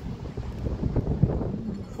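Wind buffeting the phone's microphone outdoors: an uneven low rumble that rises and falls in gusts.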